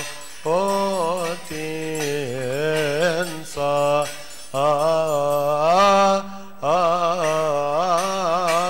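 Male voices chanting a Coptic liturgical hymn in long, melismatic phrases with held and ornamented notes, with short breath pauses between phrases.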